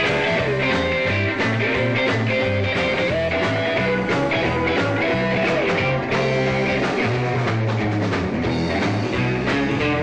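Live rock and roll band playing an instrumental passage: electric guitar lead line with bent notes over bass guitar and drums, without vocals.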